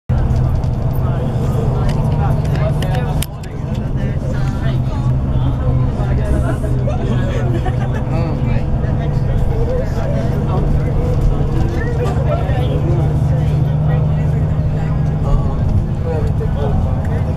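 Inside a moving tour bus: the steady low drone of the engine and road under several passengers talking.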